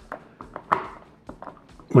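A small screwdriver turning a screw into a plastic electrical box, giving a few light, irregular clicks.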